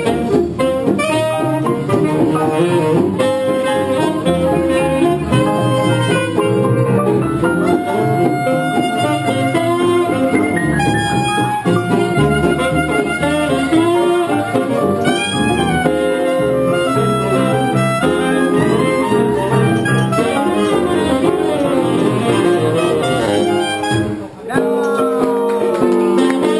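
Small live jazz band playing: clarinet and saxophone melody lines over a plucked upright double bass and electric guitar. The level dips briefly near the end.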